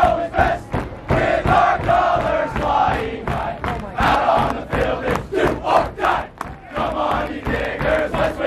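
A large group of young men singing together in unison at full voice, holding long notes, with hand claps cutting through.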